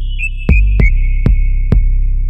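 Electronic music with a beat: a high synthesizer melody stepping down in pitch over a deep sustained bass, with four heavy drum hits.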